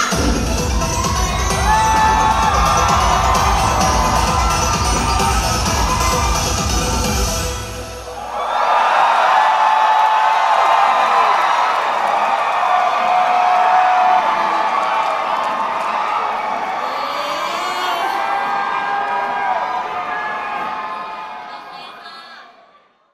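Pop music with a heavy beat playing over a cheering crowd; the music stops about eight seconds in, and the audience goes on cheering and shouting loudly before fading out near the end.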